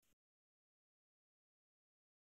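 Silence: the audio track drops to digital silence, with no sound at all.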